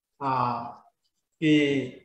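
Only speech: a man's voice, two short stretches of words with brief silent pauses around them.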